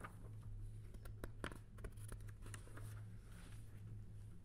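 Faint room tone: a steady low hum with scattered small clicks and ticks.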